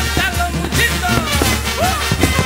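Mexican brass band (banda) playing a chilena: an instrumental passage with a steady bass line under the horns.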